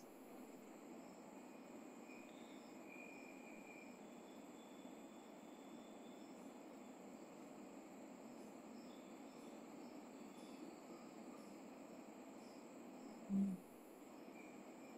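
Faint room tone: a steady low hiss with a thin high whine. Near the end there is one short, low voice sound.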